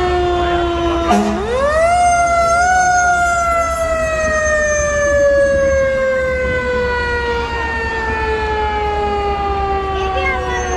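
Fire engine siren on a ladder truck, winding up quickly about a second in, then slowly winding down in pitch for the rest of the time, over a low rumble.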